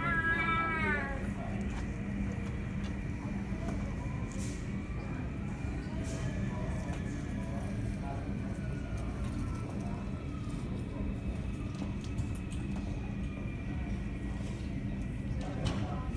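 Steady drone of jet aircraft engines on the airport apron, with a faint whine that slowly rises and then falls in pitch over several seconds. In the first second a short high cry falls in pitch.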